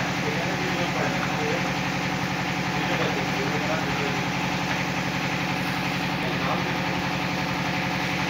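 An engine runs steadily throughout with a fast, even pulse and no change in speed, and faint voices can be heard behind it.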